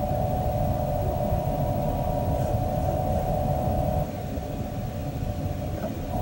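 Steady droning hum with a low rumble underneath, easing slightly about two-thirds of the way through.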